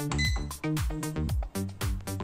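Upbeat background music with a steady beat. Just after it starts, a Zephyr bread machine gives one short, high electronic beep as its Start/Stop button is pressed.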